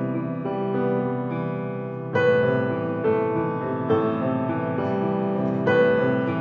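Grand piano playing a solo piece in sustained chords. A louder chord is struck about two seconds in, and further chords follow roughly every second.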